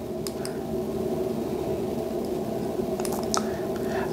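A few faint clicks and handling noises as a button on a handheld Power-Z KM003C USB-C tester is pressed to step back through its menu. A steady low hum runs underneath.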